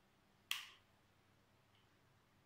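A single sharp snap about half a second in, dying away quickly, against near silence.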